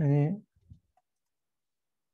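A brief spoken syllable at the very start, then one or two faint computer keyboard clicks and near silence.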